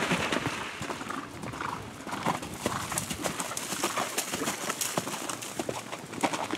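Hoofbeats of a horse cantering on a sandy track strewn with fallen leaves, a quick run of dull thuds.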